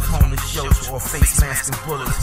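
Hip hop song: a rapped vocal over a beat with a deep bass line and regular drum hits.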